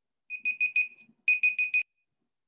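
Electronic timer alarm sounding two quick bursts of four short high-pitched beeps: the slide's five-minute countdown timer reaching zero, time up for the exercise.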